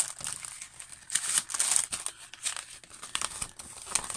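Plastic wrapping and glossy paper crinkling and rustling as a kit's contents are handled and lifted out of a box, in irregular bursts that are loudest a little after a second in.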